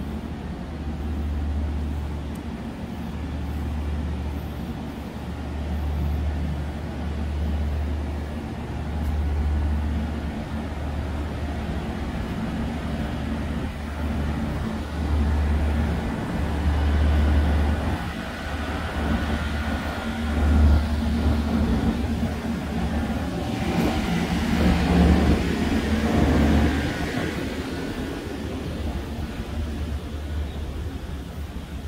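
Street ambience: a low rumble on the microphone that comes and goes, with traffic on the road. A vehicle passes and swells loudest about 24 to 26 seconds in.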